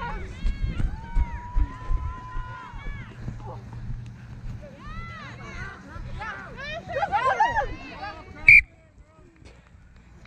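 Players shouting across the field while the referee runs with thudding footfalls on the grass; near the end comes one short, sharp blast on the referee's whistle, stopping play for a knock-on.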